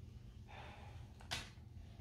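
Quiet room with a low steady hum and a faint hiss. A little over a second in there is one short, sharp breath close to the microphone.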